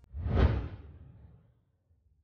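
A whoosh sound effect for a title transition, swelling to a peak about half a second in and fading away by about a second and a half.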